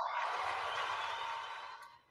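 A long breathy exhale into a close microphone, like a sigh, with no voice in it, trailing off over about two seconds.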